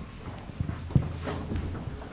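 A few dull, low thumps and knocks at uneven intervals, the clearest about a second in.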